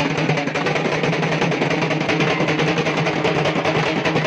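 Music driven by fast, steady drumming.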